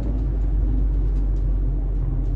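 Steady low road and engine rumble inside the cabin of a car moving at freeway speed.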